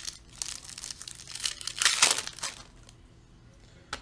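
Panini Prizm basketball cards being handled and flipped through by hand, making rustling, crinkling scrapes. The sound is loudest about two seconds in and quieter for the last second.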